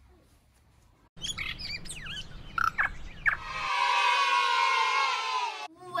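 About a second in, a series of quick bird-like chirps over a low rumble, then a layered sweep of several tones that glides slowly downward and cuts off near the end.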